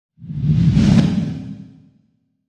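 A whoosh sound effect with a deep low rumble, swelling for about a second and then fading away, as a logo sweeps in.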